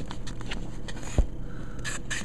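Handling of a large art book close to the microphone: faint scraping and rustling of paper, with one sharp knock about a second in.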